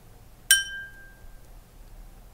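A bell struck once about half a second in, a clear ding that rings away over about a second. It is the cue to pause and answer the question just asked.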